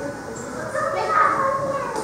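Children chattering and talking among themselves in a room.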